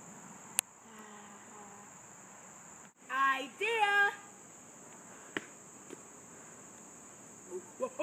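Insects in the trees keeping up a steady, high-pitched drone. A child's voice calls out twice, briefly, a few seconds in, and there is one sharp click about half a second in.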